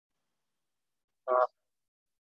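Near silence, broken about a second in by one short spoken hesitation, "uh".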